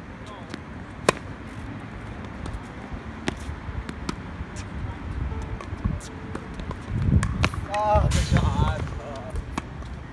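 Tennis balls struck with racquets during a baseline rally on an outdoor hard court: sharp pops a few seconds apart, the loudest about a second in. From about seven to nine seconds in, a louder low rumble with a brief pitched call over it.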